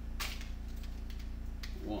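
Pokémon trading cards being handled and slid against one another: a short swish and a few light clicks over a steady low hum.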